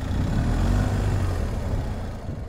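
Motorcycle engine running at low speed, a steady low rumble that eases off slightly near the end.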